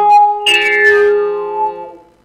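Experimental synthesizer music: steady held tones, with a new note that starts sharply about half a second in and slowly dies away. The sound fades out near the end.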